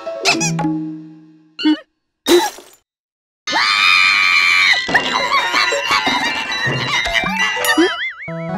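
Cartoon soundtrack: sounds fading away, two short warbling blips and a moment of silence, then a loud cartoon scream lasting about a second, with cartoon music continuing after it.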